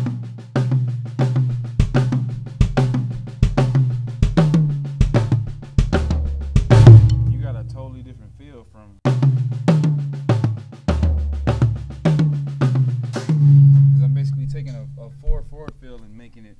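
Tama drum kit played in a short repeating pattern of hand strokes on the drums, with a bass-drum stroke set between the right and left hands, at about two to three strokes a second. The pattern runs twice. Each run ends in a louder accent with a deep kick, about seven seconds in and again near thirteen seconds, and a short pause falls between the runs.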